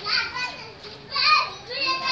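Children's high-pitched voices calling out in two bursts, one at the start and another just past a second in.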